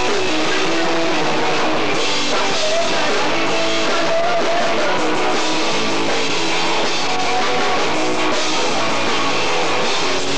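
Live punk rock band playing loud and steady: guitar and drum kit, with a singer's voice over them.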